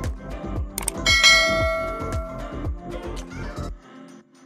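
Background music with a steady deep beat, about four beats a second, that stops shortly before the end. A click comes just before one second in, then a bright bell chime from a subscribe-button animation rings and fades.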